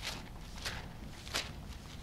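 Bible pages being turned by hand: three short papery rustles about two-thirds of a second apart, the last one the loudest.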